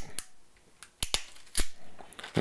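RJ45 crimping tool's cutting blade snipping the eight untwisted network cable wires to a straight end: a few sharp clicks, the loudest about a second in and again about half a second later.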